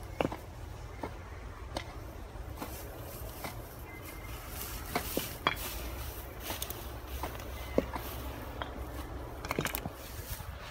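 Low steady rumble of wind on the microphone, with scattered faint clicks and rustles from hand work in dry grass.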